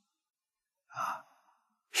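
A man's single short, audible breath about a second in.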